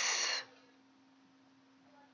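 A man's short breath in the first half second after he stops talking, then near silence with a faint steady low hum.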